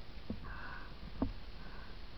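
A mountain biker breathing hard through the nose after a climb, two sniffing breaths, with two light knocks from the bike.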